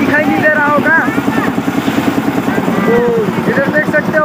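A motor engine running steadily nearby with a fast, even throb, with people's voices over it.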